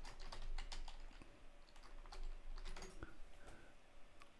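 Typing on a computer keyboard: soft, irregular keystrokes as a short chat message is typed out.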